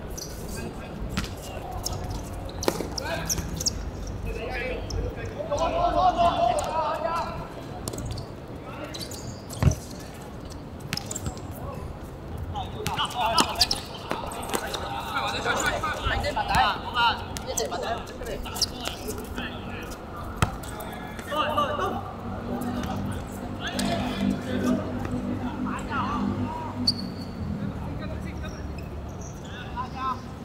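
Football thumping as it is kicked and bounces on a hard outdoor court, in scattered sharp knocks, the loudest a single hard kick about ten seconds in. Players shout and call to one another in several bursts.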